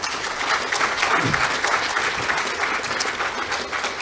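A congregation applauding: many hands clapping steadily, easing off slightly near the end.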